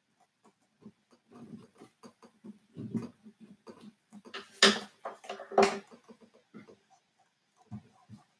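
Handling noise of a piezo pickup's thin lead being fed through a drilled hole in an acoustic guitar's body: small rustles and taps of the cable on the wooden body, with two louder scrapes about a second apart midway through.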